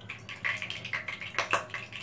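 A spoon stirring ground cashew-almond paste into a thick, wet green herb marinade in a ceramic bowl: irregular wet squelches and scrapes, with a sharper scrape against the bowl about one and a half seconds in.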